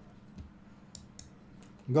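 A few faint computer-mouse clicks as a pawn is moved on an on-screen chessboard, then a man starts speaking just before the end.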